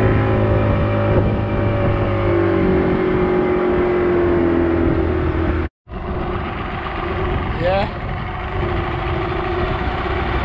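Outboard motor of an open wooden fishing boat running under way, its pitch easing down a little. The sound cuts out for a moment a little past halfway, then goes on quieter and rougher.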